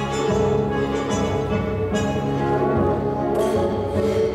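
Orchestral music: a figure skater's short-program music, playing steadily.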